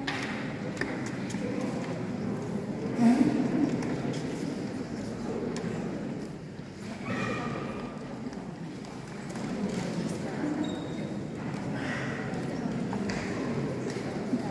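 Indistinct chatter of many people in a large, echoing hall, with the clicks of high heels on a stone floor as someone walks.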